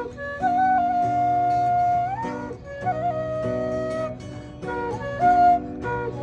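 Bansuri bamboo flute playing a slow melody of long held notes with small slides between them, over acoustic guitar accompaniment.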